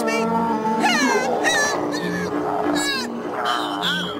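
Cartoon background music with a repeating low note figure. Over it, an animated creature gives a couple of short, sweeping cries, about a second in and again near three seconds.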